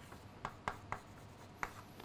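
Chalk writing on a blackboard: about four short, sharp chalk strokes and taps spread through two seconds.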